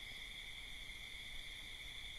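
Faint background noise of the recording: a steady high-pitched drone over an even hiss, with no other event.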